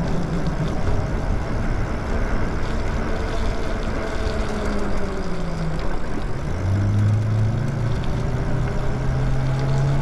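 Steady wind and tyre noise from a moving e-bike on wet pavement, with a low motor hum that falls in pitch as it slows, then rises again about six and a half seconds in as it speeds back up.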